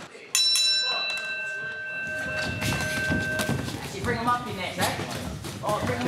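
A boxing ring bell is struck about a third of a second in, signalling the start of the round. It rings on and fades out over about three seconds, followed by crowd voices and shouts in the hall.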